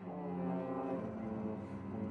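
Trombone holding a low, sustained note over bowed cello and double bass playing held tones together.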